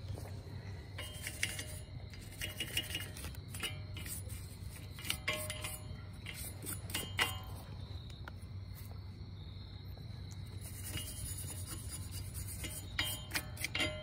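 Hand brush scrubbing rust off a bare steel wheel-hub face: irregular scraping with scattered small metallic clicks and clinks, over a steady low hum.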